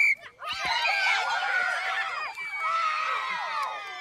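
A group of children screaming and shouting excitedly together at play, their high voices overlapping. It opens with a brief shrill note and fades toward the end.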